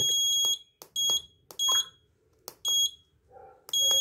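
Electronic alarm buzzer on an Arduino bell-timer board, giving high, even-pitched beeps as the setting buttons are pressed. A beep ends about half a second in, then come three short beeps, mixed with the clicks of the small push-buttons. Near the end a long steady beep starts, signalling that the timer setting is finished and saved to EEPROM.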